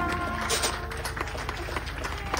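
A New Orleans jazz band's horns (trumpet, clarinets and trombone) hold the final chord of the tune and stop about half a second in. A few scattered claps follow over a low, pulsing rumble from a helicopter overhead.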